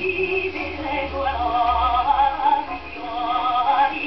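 Contralto singing from a 1911 acoustic 78 rpm record, played on a horn gramophone. The sound is thin, with no high treble.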